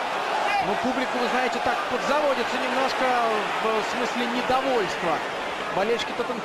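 Television match commentary: a man commentating in Russian over the steady noise of a stadium crowd.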